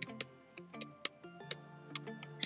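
Computer keyboard keys clicking in scattered keystrokes as code is typed, over quiet background music.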